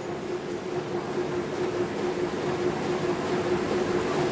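Offset printing press running: a steady mechanical hum and rumble with one constant tone in it.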